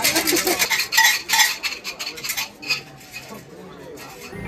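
Wooden omikuji fortune sticks rattling inside a metal fortune box as it is shaken to draw out a numbered stick: a rapid run of clattering that thins out after about two seconds.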